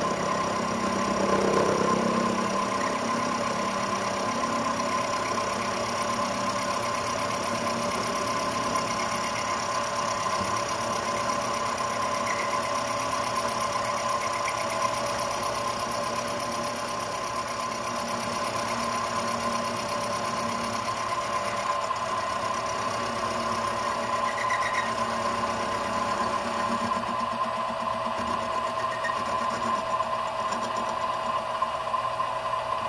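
Benchtop milling machine running with a steady motor whine while its end mill cuts the corner of an aluminium speed square, rounding it off; the cutting gets a little louder and rougher around the middle.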